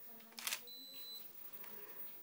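A Nikon DSLR's shutter fires once with a short mechanical clack, then a high electronic beep from the camera holds for about half a second.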